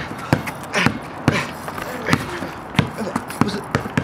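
Basketball being dribbled on a concrete driveway: about seven bounces, unevenly spaced, roughly one every half second.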